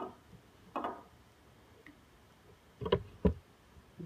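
Wooden kendamas being handled and set down on a small digital scale: a soft tap early on, then two sharp knocks close together about three seconds in as the wooden kendama lands on the scale.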